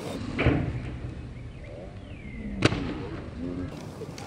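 Inline skates striking a wooden takeoff ramp and the asphalt during a freestyle high jump: a dull thump about half a second in, then a sharp clack about two and a half seconds in, the loudest sound.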